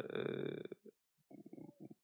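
A man's voice trailing off into a low, creaky, drawn-out hesitation sound, followed by a short silence and faint mouth and breath noises.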